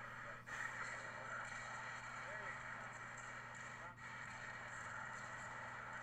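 Faint speech from a hockey instruction video playing back, over a steady low hum and hiss.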